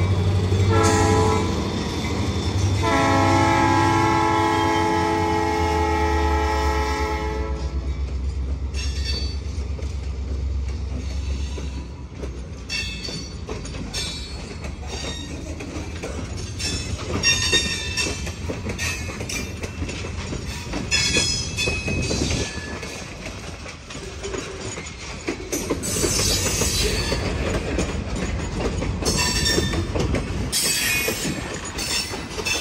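Freight train passing close by. The diesel locomotives' engines rumble heavily while the horn sounds a short note about a second in, then a long chord-like blast of several seconds. Once the engines are past, the freight cars roll by with knocking and intermittent high-pitched wheel squeal.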